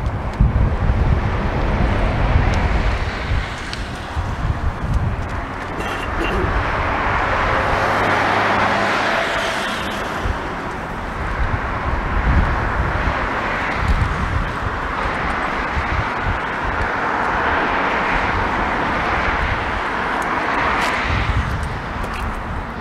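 Road traffic passing, swelling and fading twice, with a low engine hum for a few seconds near the start and wind gusting on the microphone.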